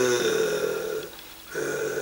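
A man's voice holding a drawn-out, level hesitation sound ("euh") for about a second, then a second, shorter one near the end.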